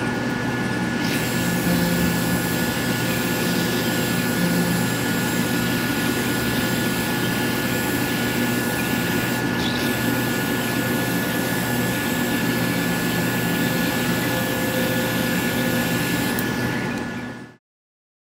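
Electric car polisher with a foam pad running steadily on black car paint, polishing with a finer compound to take out pad marks: a constant high motor whine over a low hum. It cuts off suddenly near the end.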